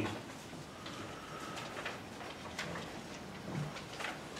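A quiet room with a few faint ticks and soft handling noises, like small movements at a lectern.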